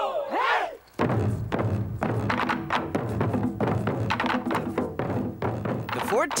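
A performer's whooping shout, then an ensemble of Japanese taiko festival drums starting up about a second in, many drummers striking in a fast, steady rhythm.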